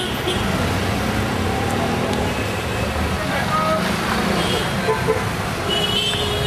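Busy street ambience: steady road traffic with engines running, background voices of passers-by, and a short horn toot near the end.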